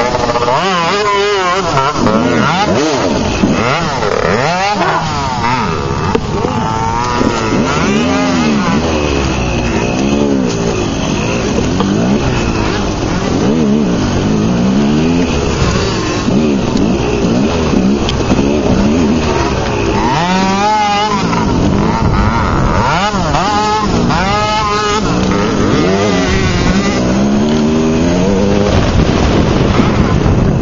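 Small youth dirt-bike engines revving up and down over and over as they ride a twisting trail, the pitch rising and falling with each blip of the throttle.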